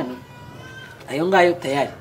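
A person's voice: a short spoken phrase starting about a second in, after a brief lull in which only a faint steady tone is heard.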